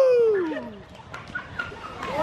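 A person imitating a wolf howl: one long call that falls steadily in pitch and fades out within the first second.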